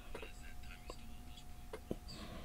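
Faint speech at a low level, with a faint steady tone underneath and a couple of small clicks near the end.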